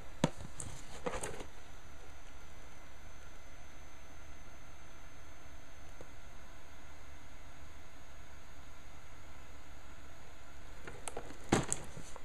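Quiet room tone with a steady low hum, broken by brief rustling and knocks of cardboard model-kit boxes being handled, in the first second or so and again near the end.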